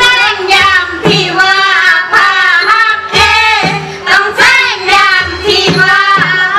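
Southern Thai Manora (Nora) dance music: a high voice sings a wavering, ornamented melody over low drum strokes about once a second, with sharp percussive clicks.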